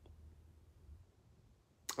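Near silence: faint room tone with a low hum, and a single brief click near the end.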